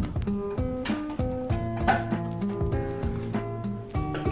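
Background music: a light melody of short, evenly paced notes.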